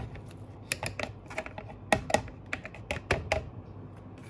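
A quick, irregular run of clicks and light knocks as sliced mushrooms are tipped from a plastic bowl into a clay mortar, knocking against its sides and the wooden pestle.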